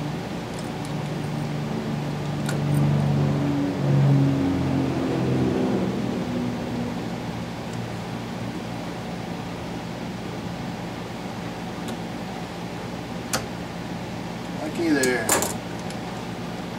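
Small metal clicks from snap ring pliers and an e-clip being worked into the groove of a brake master cylinder piston, heard as a few sharp clicks with a cluster near the end. For the first several seconds a man hums low and wordlessly, over a steady background hum.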